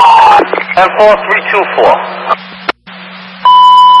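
FDNY dispatch radio heard through a scanner: a clipped transmission ends with a click, then a single loud, steady alert beep lasts under a second near the end, over a constant low hum.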